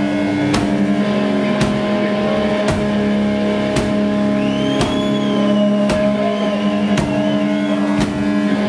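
Live heavy metal band playing loud: distorted electric guitars hold long chords while drum hits land about once a second. A high sliding, wavering note comes in around the middle.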